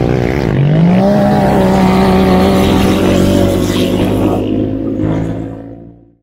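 Off-road buggy engine revving up about half a second in, then holding steady high revs as the vehicle drives on loose dirt. The sound fades out at the end.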